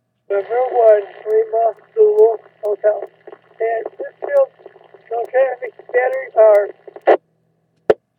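A voice transmission on a ham radio receiver: a station's speech in thin, narrow-band radio audio, garbled beyond making out, with a faint steady hum under it. It cuts off with short clicks near the end.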